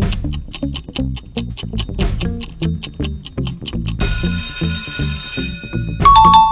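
Quiz countdown timer sound: a clock ticking about five times a second over a pulsing bass music loop, then an alarm-clock bell ringing for about a second and a half from about four seconds in, signalling that the answer time is up.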